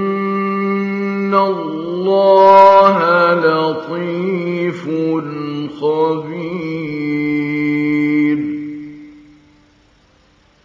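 A man reciting the Qur'an in the melodic mujawwad style: one long unbroken phrase with ornamented pitch turns, loudest about two to three seconds in. The last note is held and fades out about nine seconds in.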